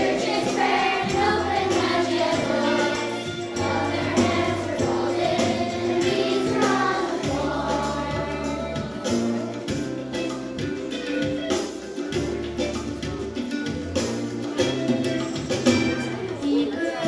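Children's choir singing an upbeat worship song over an instrumental accompaniment with a stepping bass line and a steady beat.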